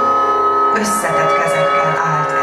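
Live accompaniment music: a violin holding a long high note over a steady drone. The held note fades about a second in, and a lower line takes over.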